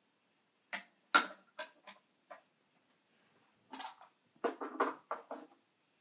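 Small porcelain and glass teaware clinking and knocking as pieces are handled and set down on a bamboo tea tray. A run of separate clinks comes in the first two and a half seconds, the sharpest about a second in, then a quicker cluster of knocks near the end.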